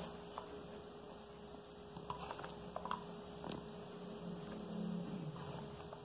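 Faint, scattered light taps and clicks of chopped ham being shaken from a plate onto cooked rice in a glass baking dish, over a steady faint hum.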